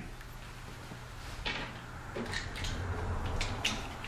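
Faint clicks and small knocks of a motorcycle passing-lamp assembly being handled and seated into its chrome housing, over a low steady hum.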